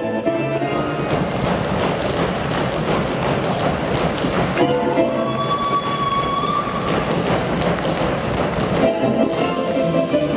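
Folk dance music with a dense run of quick taps and thuds from dancers' feet on the stage floor. The tune thins out through the middle under the footwork and comes back strongly near the end.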